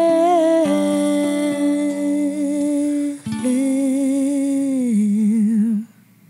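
A woman's voice holding long wordless sung notes, hummed, over a solid-mahogany ukulele. A first note is held about three seconds, then a second note follows and ends in a wavering vibrato before cutting off shortly before the end.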